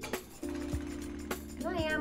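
Background music: held chords over a light, evenly spaced beat.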